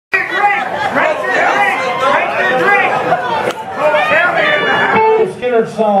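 People chattering, several voices overlapping at once. Near the end a single man's voice comes through the microphone, beginning to announce the song.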